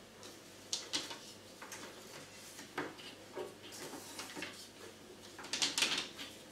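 A Moulinex Clickchef kitchen robot being set down and shifted on a tiled floor over a sheet of paper: a few scattered knocks and scrapes of its base, with the loudest cluster near the end.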